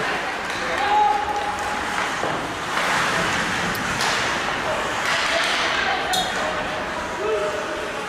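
Live ice hockey game sound in a large, mostly empty arena: indistinct shouting voices over echoing rink noise, with a few sharp stick-and-puck clicks and a sharper ringing hit about six seconds in.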